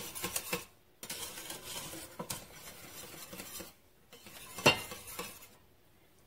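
A wire whisk stirring thickening pastry cream in a stainless steel pot, its wires scraping and clinking against the pot's base and sides, with a louder clink near the end.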